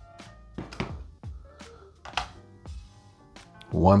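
A few light knocks and thuds as a folded phone is lifted off a steel kitchen scale and a plastic phone case is set down on the platform, over faint background music.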